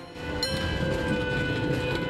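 A train rolling with a low rumble, with a sustained horn of several tones sounding together from about half a second in.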